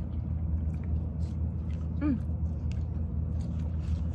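A person chewing a mouthful of food close to the microphone, with small clicking mouth sounds and a brief 'mmm' of enjoyment about two seconds in, over a steady low hum.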